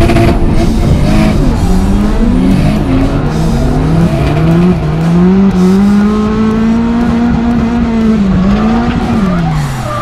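Drift car engines revving hard under throttle during a tandem drift run, with tyre squeal. The engine note wavers up and down, holds high for a few seconds, then drops away near the end.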